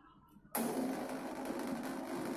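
A corded electric drill switches on about half a second in and runs at a steady speed with a constant motor whine.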